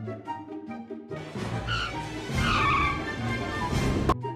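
Light rhythmic background music, then from about a second in a loud whooshing transition sound effect with sweeping tones, which cuts off suddenly at the end.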